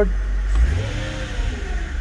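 Mercedes CLK500's M113 V8 engine blipped with the accelerator pedal, heard from inside the cabin. It rises and falls once starting about half a second in, and a second rev begins near the end. The engine revs freely now that a replacement accelerator pedal sensor is fitted against the P0122 throttle position fault.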